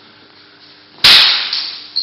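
Steel sword blades clashing: a sharp, loud clang about a second in that rings and fades, then a second, lighter strike near the end with a brief high ring.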